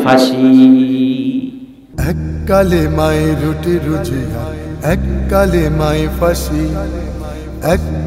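A man's voice holding long, chant-like notes fades out, and about two seconds in a Bengali Islamic gazal begins: a man singing a slow melody over a deep, steady drone.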